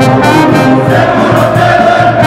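A brass band playing a salay, loud and continuous: a front line of saxophones with trumpets, sousaphones and a drum kit.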